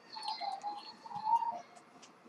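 Faint whistle of air drawn through an Aspire Nautilus tank's airflow holes during a hit, with light crackling from the heating coil, lasting about a second and a half.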